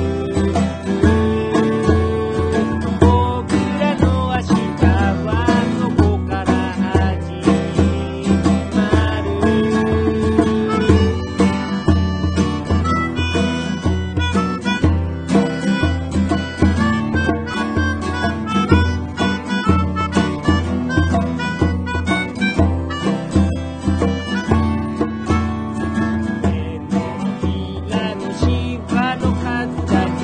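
Instrumental passage of an acoustic band song with a steady beat.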